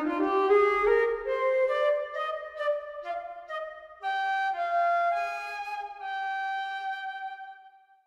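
Sampled flute from the Gabriel Flute virtual-instrument library, played with a breath controller: a slow melody stepping upward over the first few seconds, then long held higher notes that fade out near the end.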